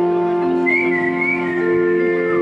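Bamboo flute music over a steady drone: a series of long held notes, with a high wavering flute note through the middle.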